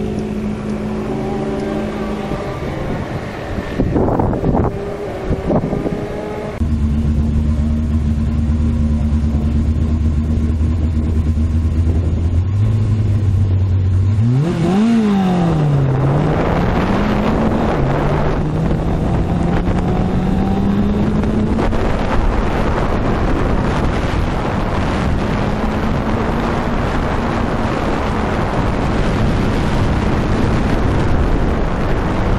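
A car engine idles for the first few seconds. Then a G-Prepared Fiat 850 Spyder autocross car's engine idles steadily at the start line, revs up sharply about fourteen seconds in as it launches, and rises and falls through two quick gear changes before holding a steadier pitch. Wind and road noise rush through the open cockpit.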